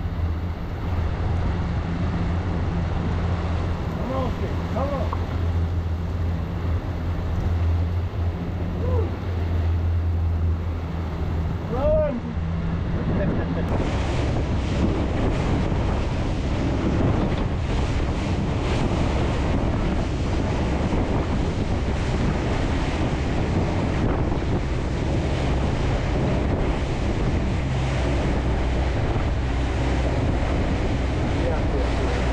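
Boat under way on its twin 300 hp outboards: a steady low engine drone with wind on the microphone and water rushing past the hull. About fourteen seconds in the sound changes abruptly to a rougher, noisier rush of wind and wake spray.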